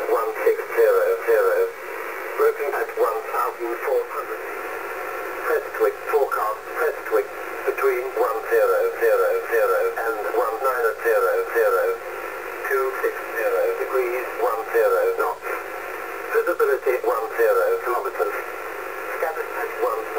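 Shannon Volmet aviation weather broadcast received on 5505 kHz upper sideband through a Yaesu FT-840 transceiver's speaker: a voice reading airport forecasts, narrow and tinny over a steady shortwave hiss, its strength rising and dipping.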